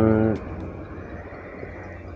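A man's voice holding one drawn-out syllable at a steady pitch, cut off about a third of a second in. Low, steady background noise follows.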